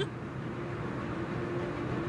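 Steady cabin noise of an Airbus A320 airliner in flight, an even rushing drone from the engines and airflow, with a steady low hum coming in about half a second in.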